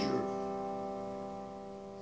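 An open C major chord on an electric guitar ringing out and slowly fading after being strummed.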